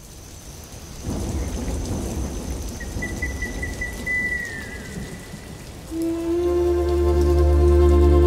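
Recorded sound of rain with thunder rumbles, growing louder in the first second, with a short high trill that ends in a falling whistle midway. A sustained music chord swells in about six seconds in, as the song's intro begins over the rain.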